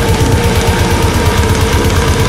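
Instrumental heavy metal with distorted guitar and a rapid, even rhythm of low drum and guitar hits.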